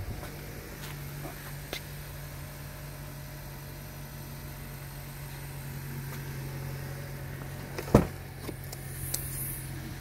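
2020 Honda CR-V engine idling after a remote start, a steady low hum. About eight seconds in there is a single sharp clunk as the rear liftgate is opened.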